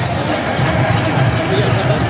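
Basketball dribbled on a hardwood court during play, with crowd voices and music going on in a large arena hall.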